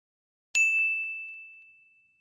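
A single bright bell ding, the notification-bell chime of a subscribe-button animation. It is struck once about half a second in and rings on one high tone, fading out over about a second and a half.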